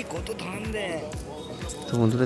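Faint voices in the background, with a few soft low thumps and a thin high tone in the second half.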